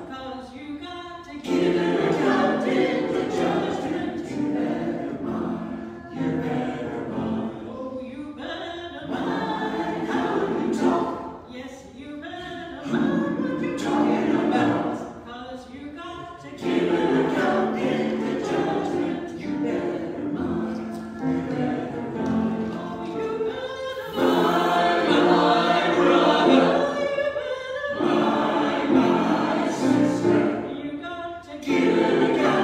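Mixed choir of men's and women's voices singing together, in phrases a few seconds long with short breaks between them.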